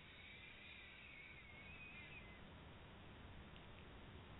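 Near silence with a faint hiss, and a faint wavering high tone that fades out about two seconds in.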